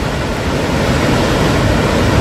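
Wapta Falls, a wide, high-volume waterfall, rushing steadily and loudly: a dense, even wash of falling water, heaviest in the low end.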